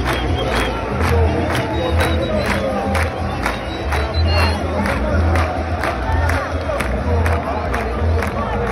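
Football stadium crowd chanting in the stands to a steady rhythmic beat of about two strikes a second.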